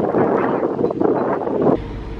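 Wind rushing over the microphone in a loud, even rush that cuts off suddenly near the end. It gives way to a quieter steady low hum inside a car.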